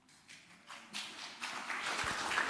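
Audience applause starting softly under a second in and building as more people join in.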